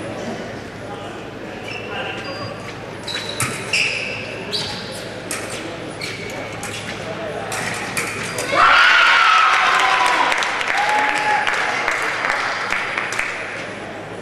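Fencing foils clashing in short metallic clicks and pings, with footwork stamping on the piste, echoing in a large hall. About eight and a half seconds in, a loud shout with crowd noise breaks out and slowly fades.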